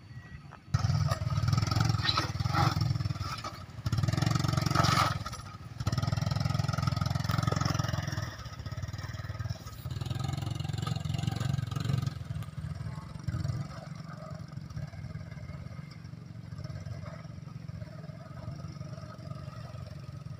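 Motorcycle engine revving hard in a series of long bursts with short breaks between them, cutting in suddenly about a second in and running lower and quieter for the last several seconds.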